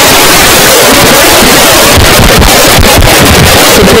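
Loud, steady rushing noise over all pitches at near full level, like an overloaded or corrupted recording, with no clear sound standing out of it.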